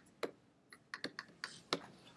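About half a dozen sharp, irregular clicks and taps, like keys or buttons being pressed.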